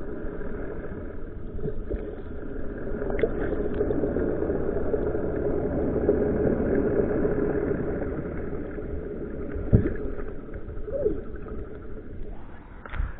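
Underwater sound through a submerged camera: a steady, muffled drone of the fishing boat's engine running, heard through the water. A single sharp knock comes near the end.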